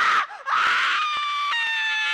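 A woman screaming in mock horror: one scream breaks off just after the start, then a second, longer scream turns into a held shrill shriek that falls slightly in pitch.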